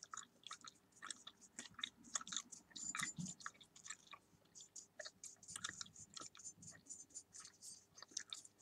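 Bubble gum chewed close to the microphone: faint, irregular wet smacks and clicks, several a second.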